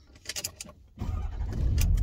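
Truck engine starting about a second in after a few clicks, then running with a loud, low rumble, heard from inside the cab.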